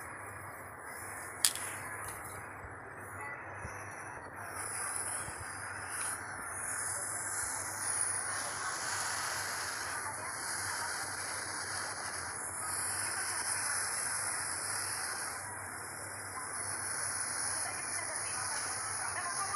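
Steady rushing of water churned along the side of a moving ferry, a little louder after about four seconds, with a single sharp click about a second and a half in.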